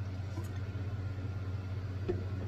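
A steady low hum of room tone, with only faint sounds of a man drinking from a large glass jar.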